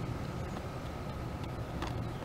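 Steady low background rumble with a faint, steady high tone, and one faint tick near the end.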